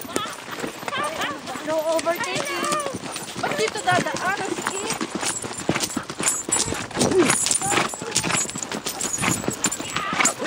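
A horse's hooves clip-clopping on a dirt trail in many irregular steps, with voices talking over them in the first few seconds.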